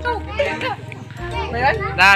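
Several voices, children's among them, talking and calling out over one another.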